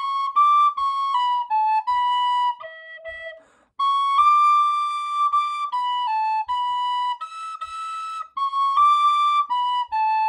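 Tin whistle playing an Irish slide, a quick melody of short stepped notes in the whistle's high register with a brief breath break a little before four seconds in.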